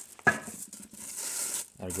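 A sharp metallic clink about a quarter second in, as a plastic-wrapped drill press part is set against the cast base, followed by plastic wrapping rustling as it is handled.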